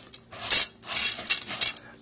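A few short, sharp rustling and clattering noises as things are handled on a table, close to the microphone.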